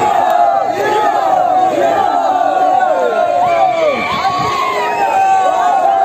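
A large crowd of people shouting and cheering, many voices overlapping and rising and falling in pitch. A steady held tone runs under the voices.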